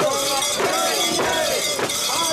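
Metal rings and ornaments on a portable Shinto shrine (mikoshi) rattling and jangling as the bearers shake it, with their voices calling out together.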